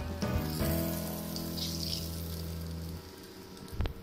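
Hot oil sizzling in a wok as fried shrimp are lifted out with a metal spatula, under background music with long held notes that stop about three seconds in. A short knock comes near the end.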